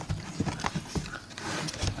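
Cardboard packaging being opened by hand: a quick string of sharp clicks and taps with some rustling as the box flaps are pulled open.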